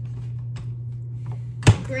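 Frosting piped from a plastic zip-top bag: faint plastic crinkles and ticks over a steady low hum, with one sharp knock near the end.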